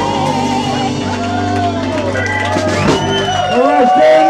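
A live band with electric bass, guitar, keyboard and drums holds the final chord of a slow soul ballad, which stops about three seconds in. Audience voices then call out and whoop.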